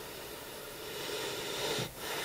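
A person's long breath close to the microphone, swelling over about a second and cutting off sharply near the end.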